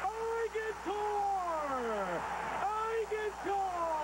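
A single voice in long, drawn-out syllables, each gliding down in pitch, repeating every second or two, like speech slowed right down.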